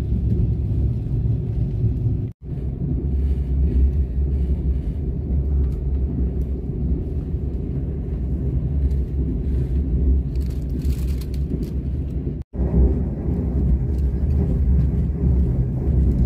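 Steady low rumble of a KTX high-speed train heard from inside the passenger cabin while it travels at speed. The sound cuts out suddenly for a moment twice.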